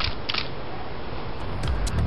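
Two SLR camera shutter clicks about a third of a second apart, over steady background noise. Electronic dance music with a beat comes in near the end.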